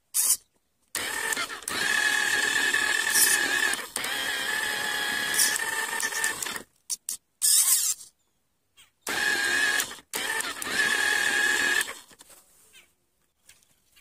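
Small geared electric drive motor of a homemade RC tractor whining steadily as it drives under load pulling a trolley. It runs in three stretches that start and stop abruptly.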